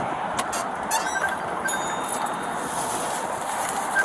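A car door clicking open over a steady outdoor hiss of wind and traffic, followed by a short run of quick, high pings at one pitch.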